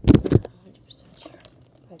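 Three or four quick, loud knocks in the first half second, then faint, quiet talk.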